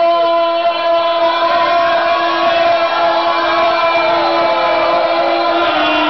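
Live party band playing in a tent: one long note is held steady throughout, with a wavering melodic line above it.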